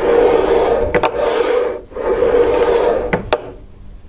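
Cutting head of a Keencut flexo plate cutter drawn twice along its aluminium cutter bar, the blade scoring a flexographic plate in light strokes: each stroke is a steady sliding noise with a hum, lasting one to two seconds, with a sharp click near the end of each. It goes quieter near the end.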